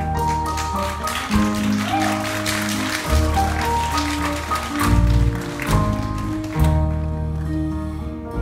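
Live rock band playing an instrumental passage: held bass notes that change every second or so under sustained higher instrument tones, with a bright shimmer over the top through the middle, heard from the audience in a concert hall.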